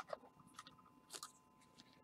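Near silence with a few faint crinkles and clicks: a trading card and its plastic sleeve handled in nitrile-gloved hands.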